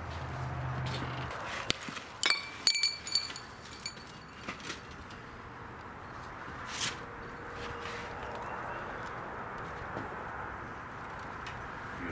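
Handling of a wooden sand-casting flask and the steel screwdrivers wedged in its corners: a few light metallic clinks with a short ring about two to three seconds in, then scattered small knocks as the cope is lifted off. A low hum stops about a second in.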